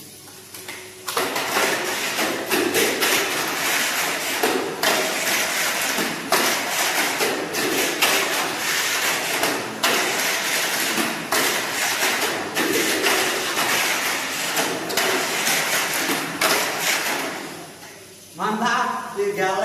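Tamiya Mini 4WD car on a Super 2 chassis running laps on a plastic track: a steady motor-and-gear whir with its tyres and rollers rattling along the track walls, broken by frequent knocks. It starts suddenly about a second in and stops just before the end.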